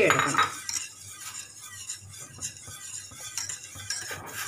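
A wire whisk stirring a thin liquid in a stainless steel pot, its wires scraping and clicking against the metal sides in a quick, irregular run of small ticks.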